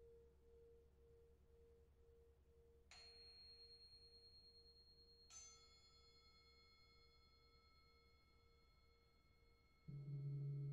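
Faint, slowly pulsing hum of a singing bowl fading away. About three seconds in, a small high-pitched bell is struck lightly, and a second, brighter bell strike follows about two seconds later; both ring on as pure tones. Just at the end, a deeper, louder strike comes in.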